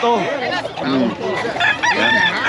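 A gamefowl rooster crowing, the crow starting near the end and carrying on, over men's voices.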